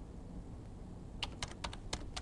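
Computer keyboard being typed on: a quick run of about six keystrokes, beginning a little over a second in.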